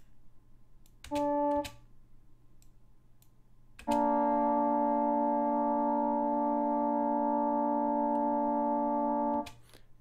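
Recorded trombone notes played back: a brief single note about a second in, then from about four seconds a steady two-note chord, B-flat with the D a major third above, held for about five and a half seconds. This is the take with the D tuned to the B-flat's harmonic series, as opposed to the sharper, slightly beating take.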